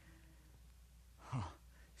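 Quiet room tone with a low steady hum, broken a little over a second in by a man's short "huh" that falls in pitch.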